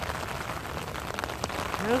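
Stormwater running fast along a concrete drainage channel: a steady splashing hiss with faint scattered ticks.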